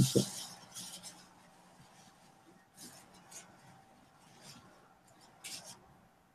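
A few faint clicks and small clinks, the loudest right at the start, then near quiet with a couple of soft short rustles.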